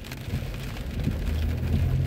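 Rain on a car's windshield and roof heard inside the cabin of a moving car, over the steady low hum of the car on the wet road.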